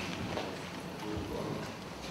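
Faint footsteps on a hard floor, with low background noise.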